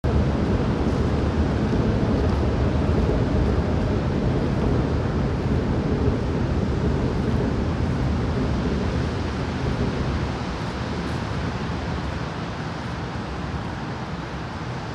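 Steady rain and wind noise under a road bridge, with low traffic noise from the bridge deck overhead, easing slightly near the end.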